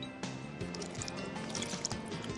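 Milk poured onto a plate of pasta to cool it, liquid trickling and splashing, with background music underneath.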